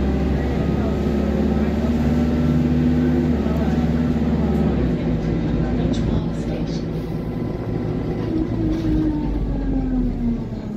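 Diesel single-deck bus heard from inside the saloon while moving. The engine pulls under load with a deep rumble for about the first five seconds, then eases off, with a few light rattles. Near the end a whining tone rises briefly and then falls.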